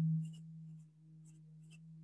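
Faint scratching of quick drawing strokes on paper, four short strokes, over a steady low hum.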